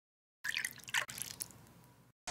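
A few faint water drips, starting about half a second in, with one falling plop around a second in.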